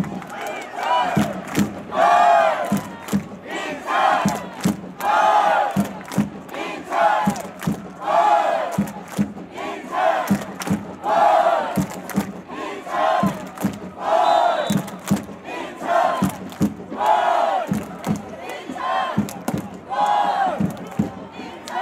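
Football supporters' section chanting in unison, a short shouted phrase repeated about once a second, over a regular drum beat.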